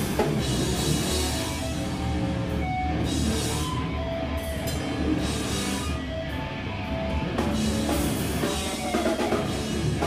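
A live rock band playing: drum kit, electric guitars and bass together, loud and continuous, with some held guitar notes in the middle.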